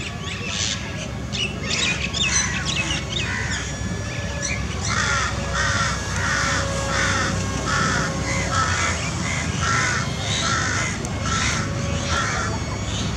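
Wild birds calling. Scattered calls come first, then from about five seconds in one bird gives a long run of the same repeated call, about one and a half calls a second.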